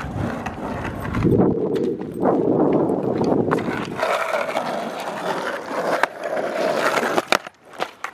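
Skateboard wheels rolling over rough asphalt, a steady rumbling noise. Near the end the rolling stops and the board clacks sharply on the pavement a few times.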